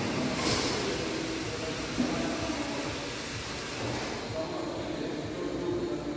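Steady noise of a working car repair shop: a continuous mechanical rumble and hiss with faint brief tones, and a single sharp knock about two seconds in.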